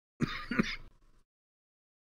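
A man clearing his throat once, in two quick bursts lasting under a second.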